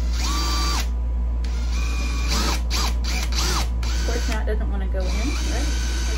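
Cordless drill driving a three-quarter-inch self-tapping screw through a steel lazy Susan bearing plate into wood, in three stop-start runs of the motor whine. The first run is short, the second longer with rapid rattling clicks, and the third comes near the end. The screw is binding on the steel plate and is hard to drive home.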